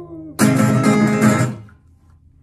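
Acoustic guitar strummed hard in one loud final chord about half a second in, ringing for about a second and then quickly damped.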